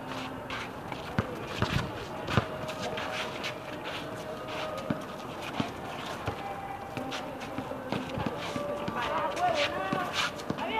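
Basketball game on an outdoor court: a ball bouncing with a few sharp thuds in the first couple of seconds, players' running footsteps, and voices in the background.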